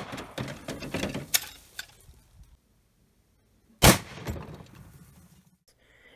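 Shots from a crude homemade blow-forward rifle test bed with a .45-70 barrel, held in a vise. A shot right at the start is followed by rattling that dies away over about two seconds, and a second shot comes about four seconds in.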